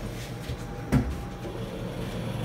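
A single sharp knock about a second in, over a steady low hum inside a stainless-steel elevator car.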